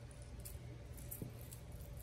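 Faint small clicks of a plastic fishing lure and its hooks being handled as rubber hook covers are fitted on, a few light ticks over a low steady room hum.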